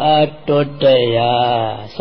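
A Buddhist monk's voice intoning a chant at a steady low pitch, with one long drawn-out syllable in the middle.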